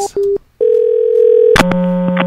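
Sound over a telephone line. An electrical hum on the line cuts out and a short beep sounds. After a brief gap a steady telephone tone holds for about a second, then a click brings the loud humming buzz back. The buzz is the noise the called number makes when it picks up, which a listener takes for a guitar amplifier.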